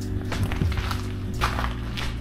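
Background music with held low bass notes that shift about halfway through, over a few footsteps on slushy pavement.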